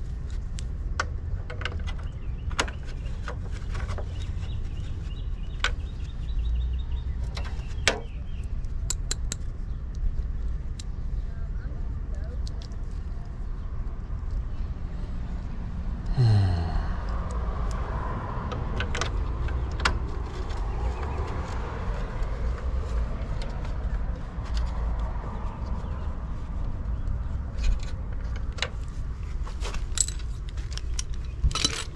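Scattered sharp clicks and taps of metal hand tools: a socket, extension and nuts being handled and fitted at the breaker lugs, over a steady low outdoor rumble. About sixteen seconds in, a passing vehicle's engine note falls in pitch and then fades.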